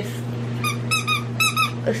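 Squeaker in a plush dog toy squeezed over and over: about six short, high squeaks in quick succession within about a second.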